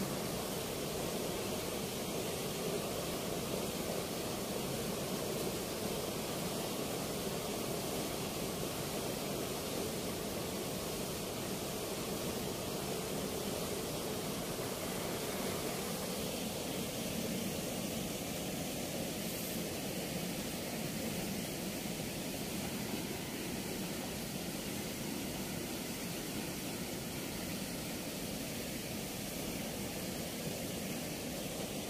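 Steady rush of churning water pouring through a weir's sluice gate.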